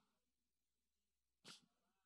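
Near silence, broken once about halfway through by a brief faint hiss.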